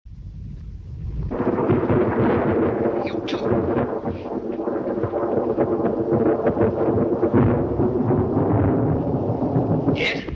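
Film soundtrack of a thunderstorm: thunder rumbling, joined about a second in by a loud, dense buzzing and crackling of the laboratory's electrical apparatus. Sharp snaps come around three seconds in.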